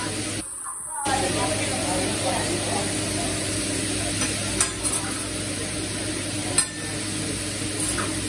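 Fried rice, cubed chicken and steaks sizzling on a steel teppanyaki griddle, a steady frying hiss. A few sharp clicks of metal utensils against the griddle come in the second half.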